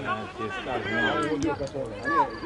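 Voices of people shouting and talking across a football pitch, with a few faint clicks about a second and a half in.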